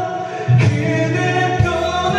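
A man singing into a karaoke microphone over a music backing track.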